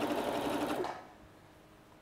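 Domestic sewing machine stitching through folded fabric on its longest stitch length, running steadily and then stopping about a second in.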